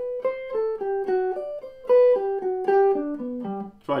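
Stratocaster-style electric guitar playing a single-note melodic line, about four picked notes a second, stepping down in pitch near the end.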